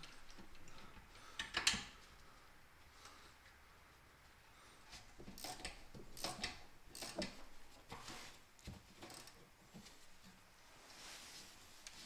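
Faint metallic clicks and taps of open-end spanners working on the guide bolts of a VW Golf 5 rear brake caliper, one spanner turning the bolt while another counter-holds the guide pin so it doesn't spin. One click comes early, then a run of taps between about five and nine seconds in.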